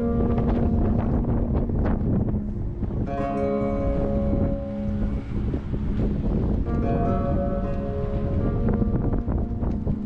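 Soft background music of sustained chords that change every few seconds, over a heavy rumble of wind buffeting the microphone.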